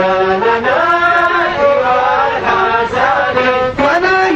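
Music with a voice singing long held notes in a chant-like traditional melody, sliding from note to note.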